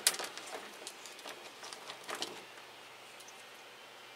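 Coconut husk chips spilling and scattering onto a bench as an orchid is eased out of a small plastic pot, with the plastic pot handled and set down: a sharp knock at the start, then scattered light clicks and rustles for about two seconds before it goes quiet.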